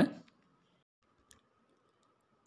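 The tail of a narrating voice fades out, then near silence with a faint steady hum and one faint click a little over a second in.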